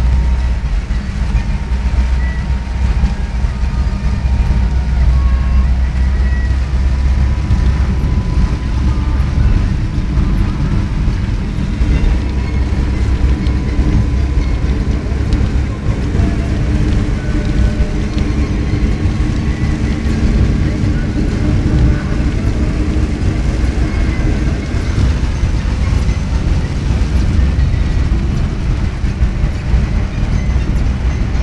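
Steady low rumble of a car's engine and tyres on a rain-soaked road, heard from inside the cabin in heavy rain with the windscreen wipers running.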